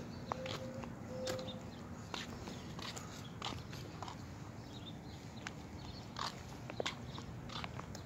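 Footsteps of a person walking on a sidewalk, heard as soft, irregular taps, with the rustle and knocks of a phone being handled while walking.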